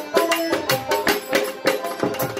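Harmonium melody over a dhol beat with quick, even drum strokes, playing the accompaniment of a Baul folk song.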